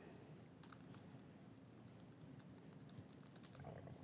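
Faint typing on a computer keyboard: scattered, irregular key clicks as a line of a SQL query is edited.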